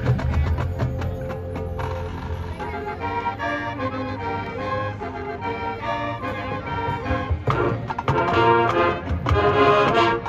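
Live high-school marching band playing: a few drumline strikes at the start, then the brass and woodwinds come in with sustained chords that change every second or so, growing louder near the end.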